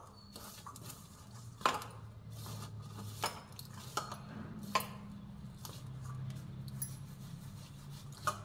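A hand rubbing oil into dry maize flour and besan in a steel bowl: soft scraping and rubbing against the bowl, with a few sharp clinks against the steel, over a low steady hum.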